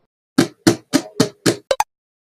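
A run of six short, sharp knocks, about three or four a second, the last two coming quicker near the end.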